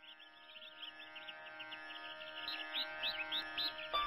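Ambient intro music fading in: a sustained drone of held tones with bird-like chirps twittering over it, gradually growing louder.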